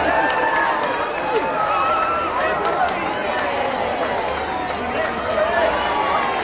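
A street crowd of onlookers chattering and calling out, many voices overlapping.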